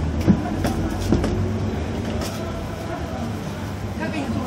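Steady low engine and road rumble heard from inside a moving vehicle, with a few short knocks and rattles in the first second or so.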